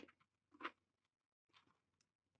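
Near silence with a few faint short crunches of someone chewing a snack close to the microphone, two of them within the first second.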